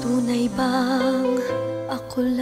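A sentimental OPM (Filipino pop) love ballad playing. About half a second in, its melody holds a note with vibrato over soft accompaniment.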